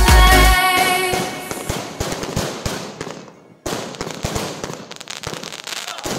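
Dance music cuts off about half a second in, then fireworks crackle and pop in quick, dense bursts that fade, break off briefly, and start again.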